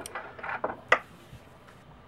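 Small plastic clicks and rustling as the glued plastic body of a Denon DL-103 phono cartridge is worked loose from its core, ending in one sharp click about a second in.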